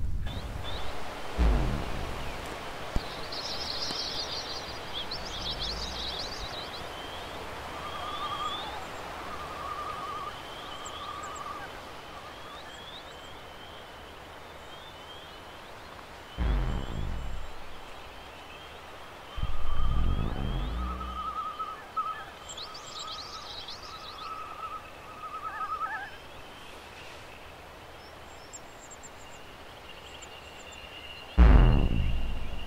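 Live electronic synthesizer music: short, bird-like high chirps and brief warbling tones over a soft hiss, broken by a few deep booms that each sweep steeply down in pitch, one about a second and a half in and two more past the middle.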